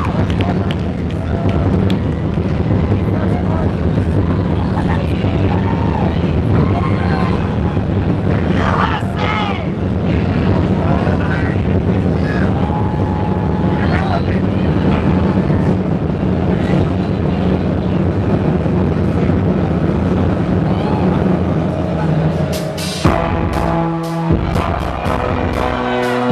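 Rock band playing live, a song's opening: a loud, steady low drone with scattered held higher notes over it. Sharp drum hits come in near the end as the full band starts.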